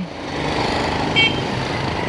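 Motorcycle engine idling steadily, with a brief high chirp about a second in.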